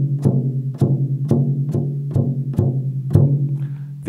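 Evans coated G2 head on a wood-shelled drum tapped by hand around the edge, about two taps a second, each ringing with a steady low pitch. The head is being checked lug by lug after being reseated, and two of the lugs have dropped in tension.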